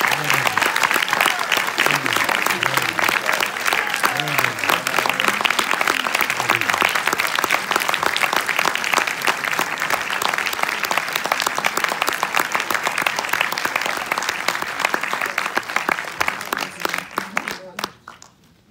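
A large audience clapping loudly and steadily, with a few voices mixed in, until the applause dies away in the last second or two.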